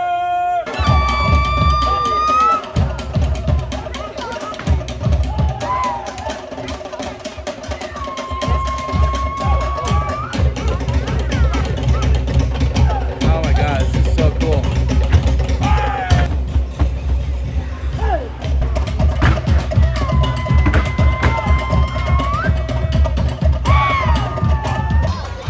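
Live Polynesian drumming starts about a second in and keeps up a fast, driving rhythm. Long held vocal calls ring out over it three times.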